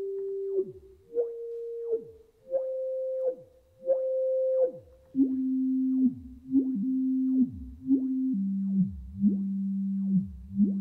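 Electronic sine-like tones held for about a second each, every note entered and left by a quick swooping glide up and down. The held pitches climb slightly over the first few notes, then drop to lower notes about halfway through.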